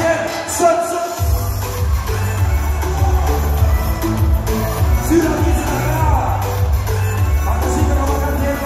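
Live music played loud over a PA in a large hall: the heavy bass is out for the first second or so and then comes back in, with a voice over the beat and the crowd underneath.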